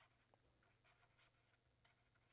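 Near silence, with faint scratches of a pen writing on paper.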